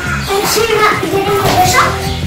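Children's voices calling out over upbeat rock background music, one voice sliding up in pitch near the end.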